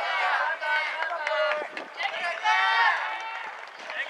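People shouting and calling out, with several drawn-out calls that rise and fall in pitch.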